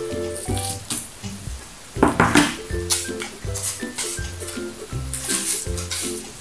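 Light background music with a stepping melody and bass line. Two rasping bursts of adhesive tape being pulled and stuck down come through it, one about two seconds in and one near the end.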